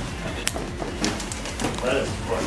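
A single sharp finger snap about half a second in, over low background chatter of voices.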